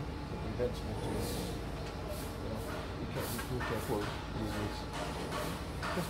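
Microfiber cloth wiping across a car's painted bonnet, giving several short soft swishes over a low steady hum.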